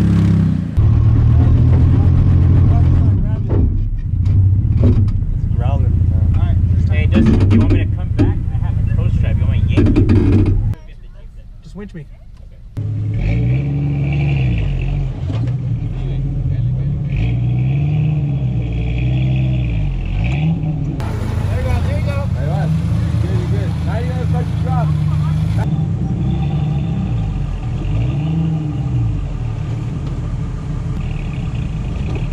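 A Toyota Tacoma's engine running steadily as it crawls over boulders. After a cut about 11 s in, a Jeep Cherokee's engine revs up and down in repeated surges, about one every two seconds, as it climbs a boulder.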